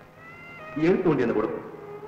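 Film soundtrack: sustained string music notes, then about a second in a short, loud vocal sound whose pitch rises and falls.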